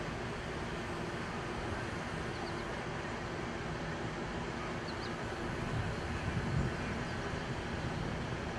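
Steady outdoor background noise with a low rumble that swells briefly about six seconds in.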